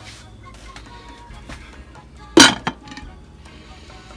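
Glass slow-cooker lid set onto the crock: one sharp clink about two and a half seconds in, ringing briefly, with a smaller knock just after as it settles.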